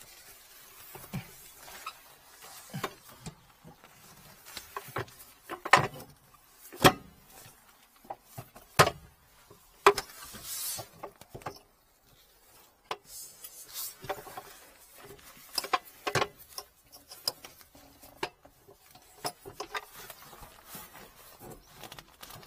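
Hands-on work noise: scattered clicks, knocks and rustling as gloved hands handle plastic hoses and a plastic cover, with the sharpest knocks in the middle and a brief rustle about ten seconds in.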